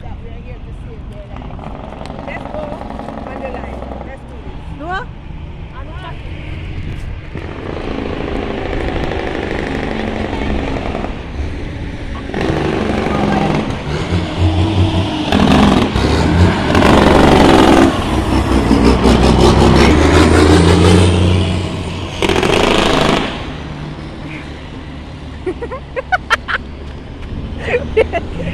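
Cars passing on a road, with a low rumble and tyre noise that swells to its loudest about two-thirds of the way through, under people's voices.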